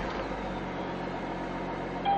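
Audi A6 3.0 TDI's V6 diesel engine idling steadily just after a push-button start, heard from inside the cabin; quiet, with little vibration.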